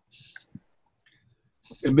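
A pause in a man's speech over a video-call link: a brief high hiss and a faint click, then about a second of dead silence before he starts speaking again near the end.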